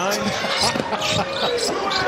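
Basketball dribbled on a hardwood court, with a man laughing over it.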